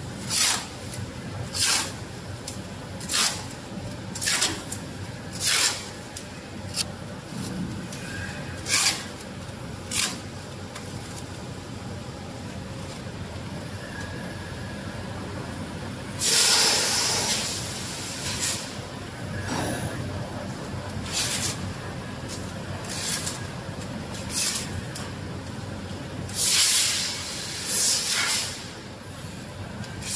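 Compressed air hissing in short, sharp releases at irregular intervals, about a dozen, with two longer hisses of a second or two, from the pneumatic system of a BOPP tape slitting machine, over a steady low machine hum.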